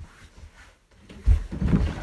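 A person slammed back-first onto a mattress on a floor in a wrestling powerbomb (Blue Thunder Bomb): a dull, heavy thud just over a second in, followed by further bumping and rustling of bodies and bedding.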